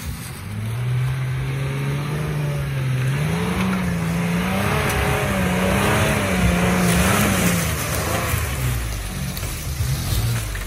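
Toyota FJ Cruiser's 4.0-litre V6 revving hard under load as it climbs a steep hill. Its note rises a few seconds in, wavers up and down, and falls away near the end, over the noise of tyres churning through dry leaves and dirt.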